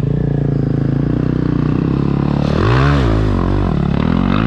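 Honda CRF450RL single-cylinder four-stroke motorcycle engine pulling up a muddy hill under load. The engine holds steady revs, then about two and a half seconds in it revs up and drops back a few times.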